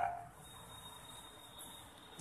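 Low room tone in a pause between spoken phrases, with a faint steady high-pitched whine throughout. The last word tails off just at the start.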